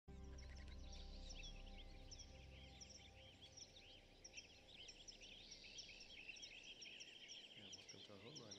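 Many small birds singing and chirping together, faint and continuous, over a low sustained musical drone that fades away about six or seven seconds in.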